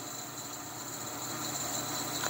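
Steady machinery background noise: an even hiss with two thin, high-pitched whining tones held throughout.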